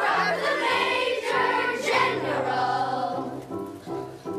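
Children's chorus singing with musical accompaniment. The voices stop about three seconds in, and the accompaniment carries on alone with evenly repeated chords.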